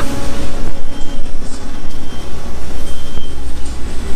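Industrial dye-sublimation roller heat press and shop machinery running: a loud, uneven rumble with a faint high whine twice.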